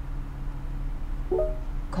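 Steady low hum inside a car cabin, then about one and a half seconds in a short electronic tone from the Ford Sync voice-command system as it responds to a spoken call command.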